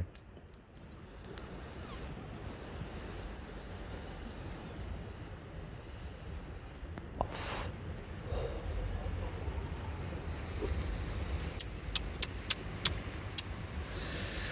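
Steady low rumble of wind and surf at the shore, swelling about eight seconds in, with a short hiss a little after seven seconds and a few sharp clicks near the end.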